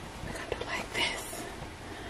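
A woman whispering faintly under her breath.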